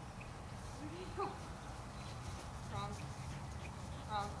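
Two short, high-pitched voice calls, one rising about a second in and another near three seconds, over a steady low background rumble, with a few faint high chirps.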